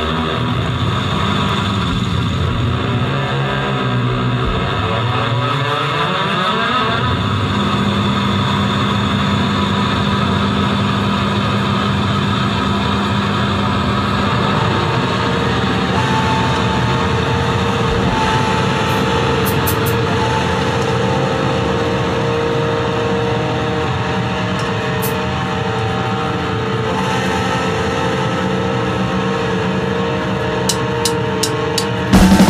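Loud, dense live noise-rock drone from a distorted electric guitar through effects, with sweeping pitches in the first few seconds that then settle into steady held tones.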